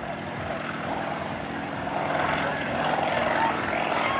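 Aerobatic propeller plane's engine running during a display manoeuvre, growing louder in the second half as it comes nearer.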